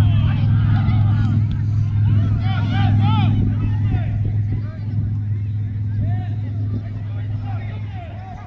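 A steady low motor hum, slowly getting quieter toward the end, under scattered distant shouts and calls from players on a soccer field.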